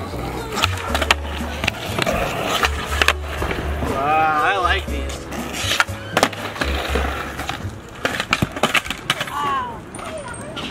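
Skateboard tricks on concrete: the tail popping and the board clacking and landing, with wheels rolling between hits. This plays over background music with a heavy bassline and a voice in it.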